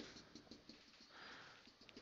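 Near silence, with faint taps and scratches of a marker on a whiteboard as an equation is written and a dashed line is drawn.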